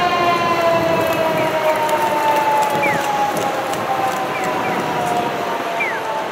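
Fire engine siren wailing: one long tone that has just risen and now slowly falls in pitch, over steady street traffic noise. Short high chirps sound several times over it.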